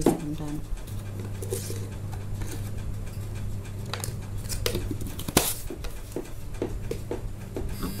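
Light clicks and knocks of a plastic measuring scoop against a shake-powder tub and a steel mixer jar during scooping, with one sharper knock about five seconds in. A steady electrical hum runs underneath.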